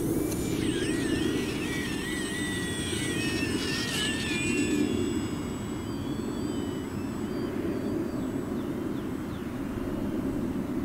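Small electric RC airplane's motor and propeller under power as it takes off from grass and climbs out, a steady drone with a wavering whine over it in the first few seconds.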